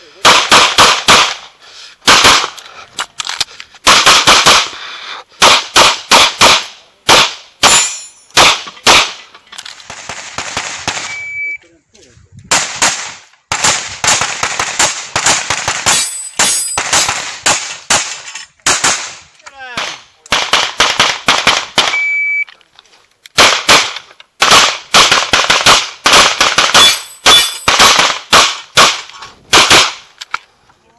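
Pistol shots fired in quick pairs and rapid strings on an IPSC course of fire, with short pauses between strings. Twice a short, high, steady electronic beep of a shot timer sounds, and a new string of shots follows about a second later.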